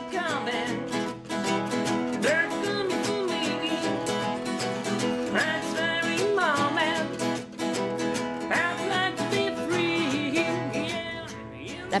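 Acoustic guitars strummed in a steady rhythm while a man sings: an acoustic rock band playing live.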